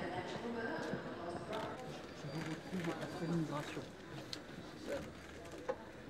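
Murmur of several people talking at once, with a few short, sharp clicks scattered through it.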